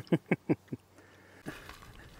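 A person imitating a sheep's bleat: four quick wavering pulses within the first second.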